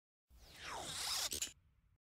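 A swoosh sound effect for an intro title: a noisy rush whose pitch sweeps down from high to low over about a second, ending in a couple of sharp clicks and a short faint tail.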